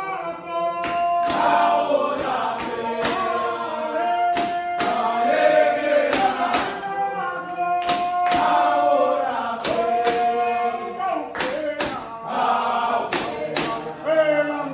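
A group of men singing a chant-like song together in unison, with long held notes, punctuated by sharp percussive hits.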